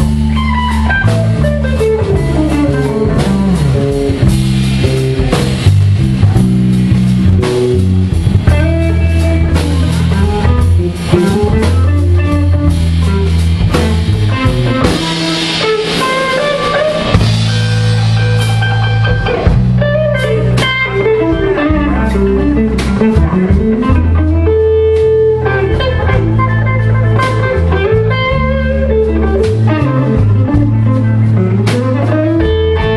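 Live blues band playing an instrumental passage: an amplified archtop electric guitar plays a single-note solo over a walking low bass line and a drum kit with cymbals.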